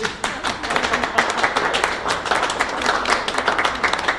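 Applause from a small audience: a dense, even patter of hand claps that takes up quickly at the start.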